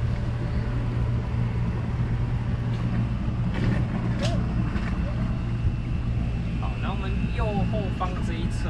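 Tour boat's motor running at a steady cruise with a constant low hum, the boat moving along calm water.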